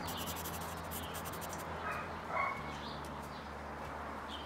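Outdoor ambience with a steady low hum, and a short animal call about two seconds in.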